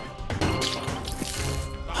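Dramatic music with a splash of water as a cupful is thrown into a person's face, in the first second.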